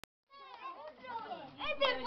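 Children's voices chattering over one another, starting a moment in and getting louder toward the end.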